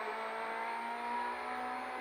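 Peugeot 208 R2B rally car's 1.6-litre four-cylinder engine, heard from inside the cabin, holding a steady high-revving note in third gear.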